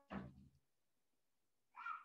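Two short voice-like calls over near silence, a lower one at the very start and a higher-pitched one near the end.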